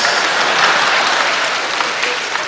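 Studio audience applauding, the applause slowly fading.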